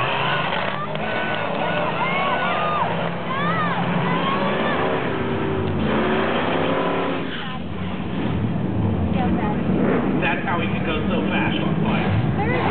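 Two cars launching and accelerating hard down a drag strip, one of them a Mustang GT with a Vortech-supercharged 306 ci V8. Engine pitch climbs and drops back at each gear change through the first six seconds, and the sound eases about seven and a half seconds in. The owner says two burnt plug wires are making the engine run very rich.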